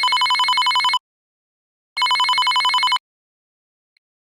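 Telephone ringing: two rings, each about a second long with a fast trill, a second apart.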